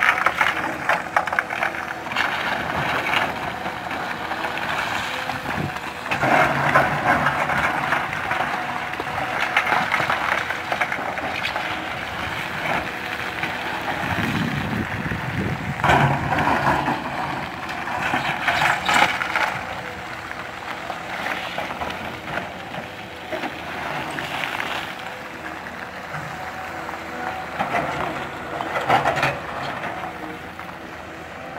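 Tracked hydraulic excavator's diesel engine running under load, with its steel bucket scraping across a rocky slope and loose rock rattling down the bank in repeated rough surges as the slope is cut and dressed.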